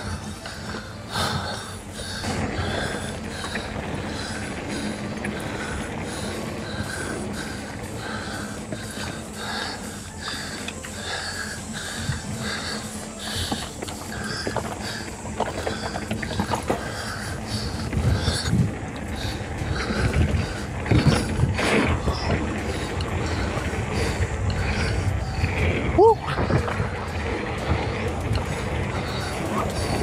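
A Devinci Atlas Carbon RC mountain bike ridden along dirt singletrack: knobby tyres rolling over packed dirt and roots, with the bike knocking and rattling over the bumps. The rattle grows louder and busier about two-thirds of the way through, and a brief squeak comes near the end.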